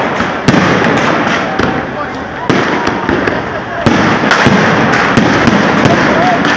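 Aerial firework shells bursting: a run of sharp, irregular bangs, the loudest about half a second in and coming closer together after about four seconds, over a steady background of crowd chatter.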